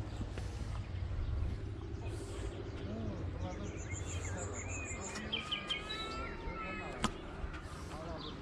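Outdoor ambience: a steady low rumble with faint distant voices, and birds chirping in the second half. A single sharp click comes about seven seconds in.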